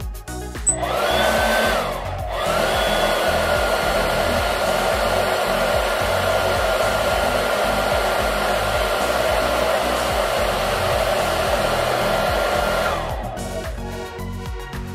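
Electric blower motor running on the inverter's output, a whirring rush of air with a steady whine: it spins up, cuts out briefly about two seconds in, spins up again, runs steadily and winds down near the end.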